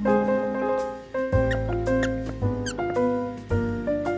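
Piano background music, with three short high squeaks partway through from a plush squeaker toy being chewed by a dog.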